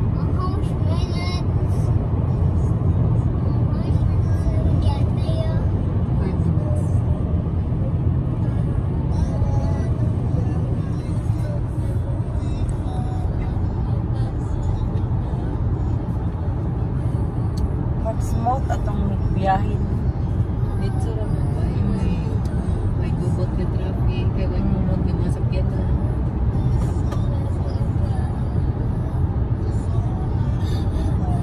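Steady road and engine noise inside a moving car's cabin, a constant low rumble.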